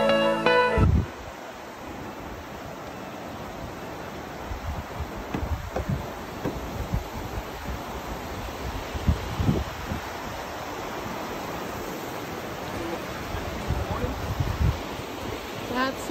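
Music cuts off about a second in. After it come irregular thuds of footsteps and trekking poles on a wooden footbridge deck, over a steady rushing of creek water.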